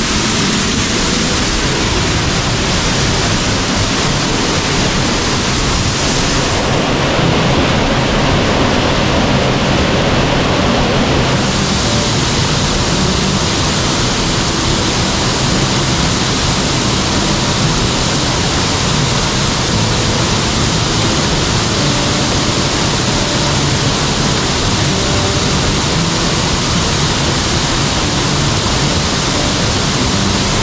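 Grotto Falls, a waterfall pouring down onto rock into a pool: a loud, steady rush of falling water, heard up close from right behind the curtain of water near the start. Its sound changes character briefly between about seven and eleven seconds in.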